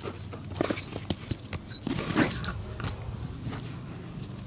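Hand-stitching a black leather shoe: small clicks and handling sounds as a needle goes through the leather, with a longer rasp about two seconds in as the thread is drawn through.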